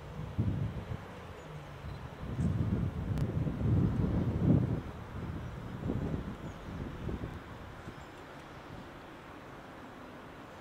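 Wind buffeting the microphone in irregular low gusts, strongest from about two to five seconds in, easing off near the end.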